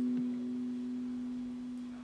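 A single sustained low note from the band's amplified instruments, held alone and slowly fading as a steady, nearly pure tone.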